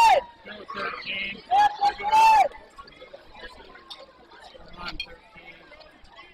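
High-pitched shouting voices: a loud two-part yell about a second and a half in, after some softer talk, then faint background chatter.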